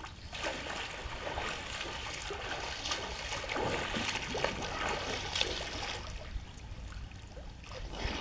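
A swimmer diving into a pool, then swimming across it: the entry splash about half a second in, followed by continuous splashing and churning water from the strokes that eases off near the end.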